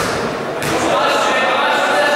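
A basketball bounces once on a hardwood gym floor at the very start, then voices call out in the echoing sports hall.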